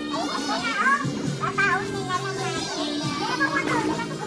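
Music playing, with children's high voices and chatter over it.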